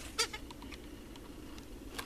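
A CD case being handled and turned over in the hand: one sharp click about a quarter second in, then a few faint ticks and rustles over low room noise.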